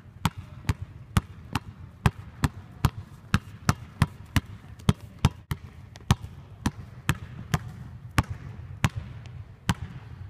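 A basketball dribbled on a hardwood court, bouncing in a steady rhythm of about two bounces a second.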